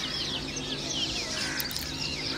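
Several small birds chirping, a busy run of short, quick high notes that swoop up and down.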